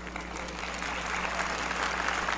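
A large audience applauding, the clapping starting softly and building steadily louder.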